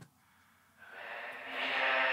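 A sung vocal's delay and reverb return played back on its own, cut hard with low- and high-cut filters so only a muffled midrange wash of echoes remains. It swells in about a second in, after a moment of silence.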